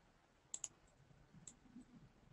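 Near silence broken by a few faint computer clicks: a quick pair about half a second in and a single one about a second later, as a stock chart is paged through on screen.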